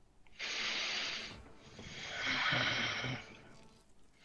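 A person breathing close to a headset microphone: a short breath about half a second in, then a longer, louder one.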